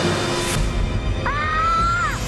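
Dramatic background score with a brief whoosh about half a second in. Later a single high pitched tone swoops up and holds, rising slightly, for most of the last second.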